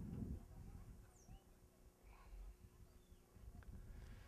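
Near silence: a faint low rumble with a few faint, brief high chirps.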